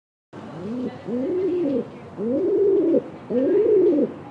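Pigeon cooing: a run of about four low coos, about one a second, each rising and then falling in pitch.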